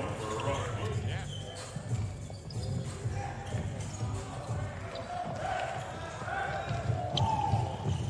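Basketball being dribbled on a hardwood court, with players' shouts and calls in a near-empty arena.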